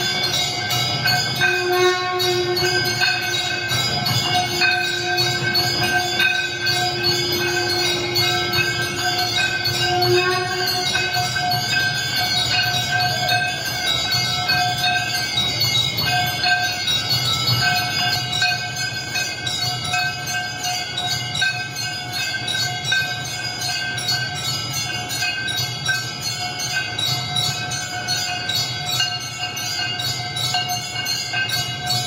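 Temple bells ringing continuously over steady, held droning tones and a low rumble. A lower drone note stops about ten seconds in.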